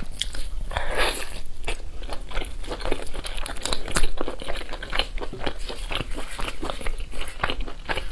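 Close-miked chewing of chicken meat and skin, mixed with the wet tearing and crackle of a whole spice-coated chicken being pulled apart by gloved hands: a steady run of sharp, uneven clicks.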